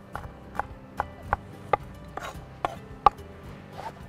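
Kitchen knife chopping celery finely on a wooden cutting board: a steady run of short knocks, about two and a half a second, with one sharper knock about three seconds in.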